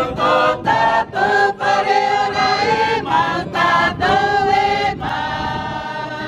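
A group of voices singing together in chorus, held notes broken by short pauses between phrases.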